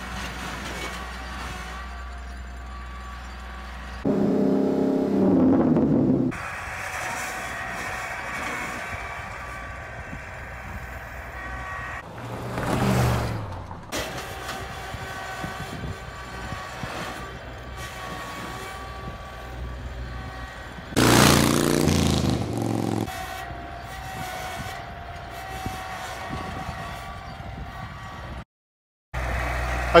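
Kubota L3901 tractor's three-cylinder diesel engine running steadily while digging snow with the front loader. About 4, 12 and 21 seconds in it grows louder for a second or two, its pitch falling each time. A brief gap comes near the end.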